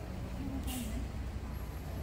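Steady low engine rumble of a city bus standing at the curb, with a short hiss of air under a second in. Passers-by's voices sound over it.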